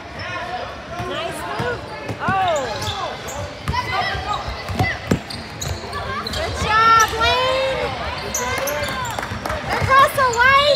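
Game sounds on a hardwood basketball court: the ball bouncing, sneakers squeaking, and players and spectators shouting.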